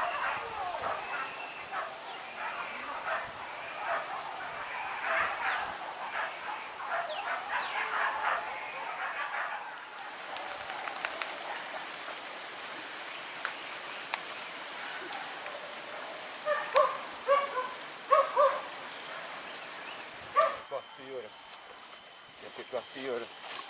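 Hunting dogs barking and yelping: a dense run of calls from dogs in a boar chase through the first half, then after a quieter stretch a handful of loud, short yelps from close by near the end.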